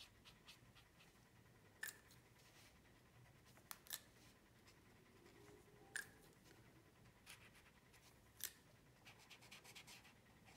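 Near silence, broken by a few faint, sharp clicks and taps spread through and a run of quick light ticks near the end: the small handling sounds of colouring with watercolour paints and brush.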